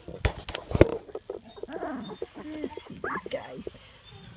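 Two-and-a-half-week-old puppies whimpering and squeaking in many short cries that rise and fall in pitch, with a few sharp knocks in the first second.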